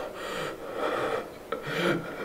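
A man's harsh, strained breathing: three noisy breaths in quick succession, the last the loudest, as from someone being choked.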